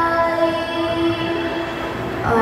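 Live band holding one steady sustained chord on keyboard and guitars, with no voice singing over it.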